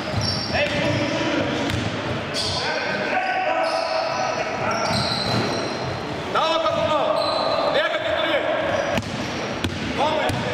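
Basketball game in a large sports hall: a basketball bouncing on the hardwood floor, sneakers squeaking as players run and cut, and players' voices calling out, all echoing in the hall.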